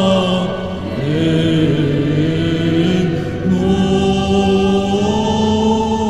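Armenian Apostolic church chant sung by voices with a choir, recorded live in a church. The melody moves slowly in long-held notes, changing pitch about a second in and again just past halfway.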